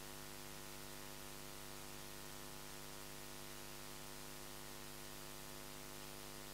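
Faint, steady electrical hum with a layer of hiss: mains hum on the broadcast audio line, with no programme sound over it.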